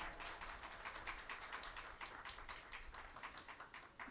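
Faint applause from a small seated audience: scattered individual hand claps, several a second.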